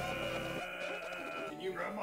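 Quiet audio from an edited puppet comedy video: a held pitched voice-like sound, then a puppet voice speaking from about a second and a half in.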